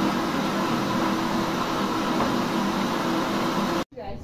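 Red electric countertop blender running steadily, blending a liquid pudding mixture of condensed milk and paçoca. It cuts off abruptly near the end.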